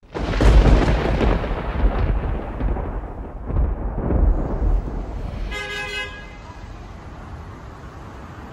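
A loud rumbling noise that fades over about five seconds. A short horn-like toot sounds near the six-second mark. After it comes a low, steady hum of outdoor street noise.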